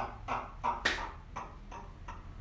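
A man's hearty laughter trailing off in short rhythmic bursts that fade away, with a single sharp clap a little under a second in.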